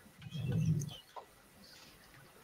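A brief, soft, low hum-like voice sound, like a murmured "mm", over a video-call microphone, followed by a couple of faint clicks.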